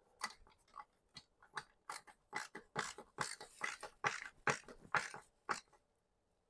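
Screwdriver tightening a ground screw into the side of a metal electrical bell box: faint, irregular small clicks and scrapes of metal on metal, coming thicker in the middle and stopping just before the end.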